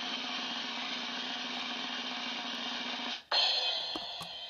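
Drum roll, running steadily for about three seconds, then ending in a cymbal crash that rings on.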